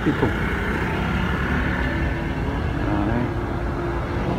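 Steady low rumble of road traffic, with no single event standing out.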